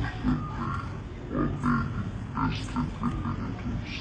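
A man speaking in a low voice in short phrases with pauses.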